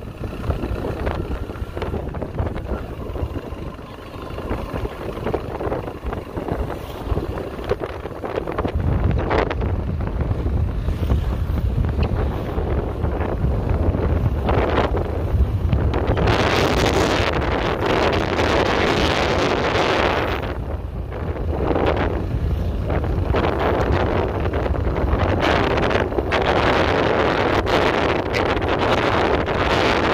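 Road and wind noise from a moving vehicle: a low rumble with wind buffeting the microphone. It grows louder about a third of the way in, and there are long surges of rushing wind in the second half.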